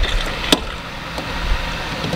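Camera being handled and shifted against cloth: a steady rustling haze with a low rumble, and one sharp click about half a second in.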